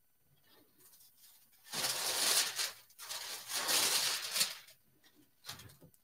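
Sheets of parchment paper being handled, rustling in two long stretches starting about one and a half seconds in.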